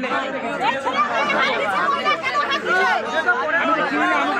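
Several people talking over one another in a crowd, an ongoing argument.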